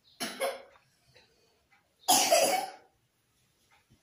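A person coughing twice: a short cough just after the start and a louder, longer one about two seconds in.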